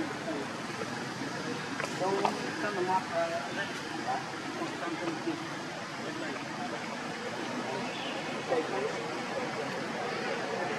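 Indistinct voices of people talking at a distance, in a couple of short stretches, over a steady outdoor background hiss.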